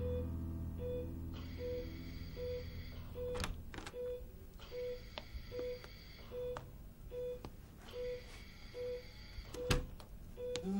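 Hospital heart monitor beeping at each heartbeat: a short, even, mid-pitched beep a little more than once a second. Sharp clicks sound about three and a half seconds in and, loudest, just before the end.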